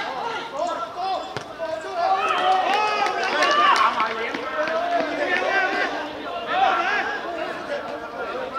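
Several men's voices shouting and calling out over one another, loudest from about two to four seconds in, as a goal is scored in a seven-a-side football match. A single thud of a football being struck comes about a second in.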